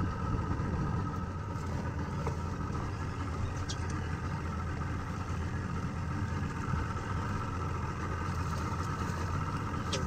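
A boat's engine idling with a low, even drone, with a couple of faint ticks over it.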